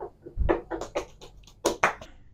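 A quick, irregular run of sharp taps, about ten in two seconds, ending in two loud hand claps.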